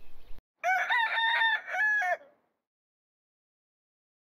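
A single rooster crow, about a second and a half long, in several pitched segments, set in dead silence with no background noise, as a dropped-in sound effect.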